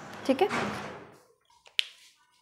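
A short spoken phrase, then a single sharp click near the end, preceded by two faint ticks.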